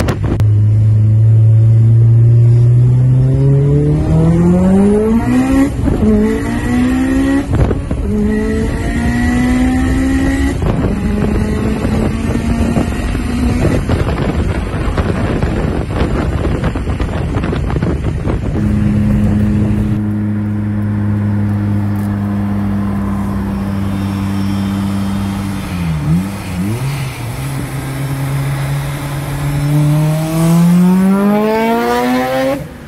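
Mitsubishi Lancer Evolution IV's turbocharged 4G63 four-cylinder accelerating hard through the gears, heard from inside the cabin: the engine note climbs steeply, with gear changes breaking it off and restarting it several times. After a cut, a car engine holds a steady drone, dips briefly near the end, then climbs again.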